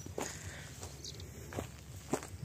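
Footsteps of a person walking on dry sandy, grassy ground: a few soft, uneven steps.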